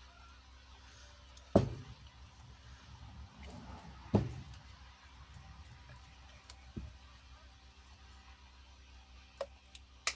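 A soft silicone bowl mould being flexed and peeled off an epoxy resin piece by hand. Quiet rubbing and handling, with two thumps about one and a half and four seconds in, and lighter knocks later.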